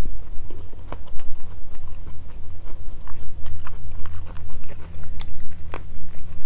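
Close-miked chewing and biting of grilled chicken: a run of wet, sharp mouth clicks and crunches, over a steady low hum.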